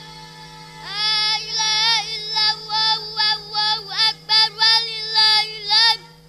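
Children chanting Qur'anic verses together in a melodic recitation, amplified through handheld microphones. The chant comes in loudly about a second in, moves in short gliding phrases with quick breaks for breath, and stops abruptly at the end.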